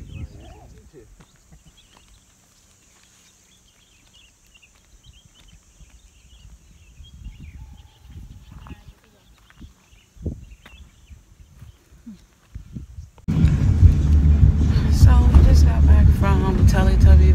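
Quiet hillside ambience with faint high chirps and low gusts of wind on the microphone. About thirteen seconds in it cuts abruptly to the loud, steady rumble of a car's engine and road noise heard from inside the cabin.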